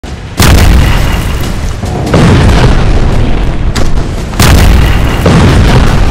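Four heavy explosion booms, the first the loudest, each dying away slowly, over music.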